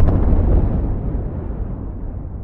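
Explosion-like boom sound effect for a logo reveal: a sudden loud burst at the start that fades away over the next two seconds, growing duller as it dies.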